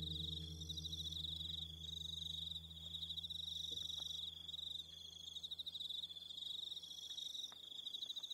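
Crickets chirping in a steady, fast-pulsing high trill. The last acoustic guitar note rings out and fades away over the first few seconds.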